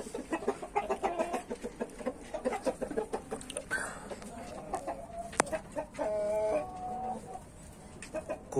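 Backyard chickens clucking: a run of many short clucks, then a single sharp click and one longer, drawn-out call about six seconds in.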